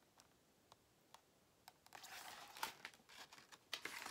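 Faint rustling and light clicks of a paper picture book being handled and its page turned, starting a little under halfway in after a near-silent opening.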